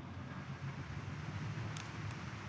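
A steady low hum of room noise with a faint hiss, and one faint click near the end.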